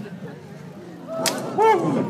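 A single sharp clack about a second in, then a loud, short vocal cry that rises and falls in pitch, over a faint crowd murmur.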